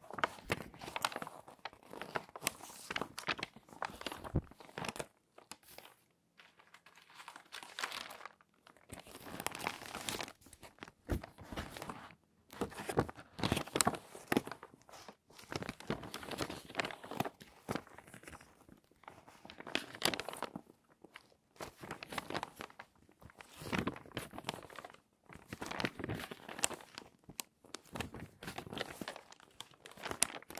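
Glossy magazine pages being handled by hand: crinkling, rustling and flipping in irregular bursts separated by short pauses.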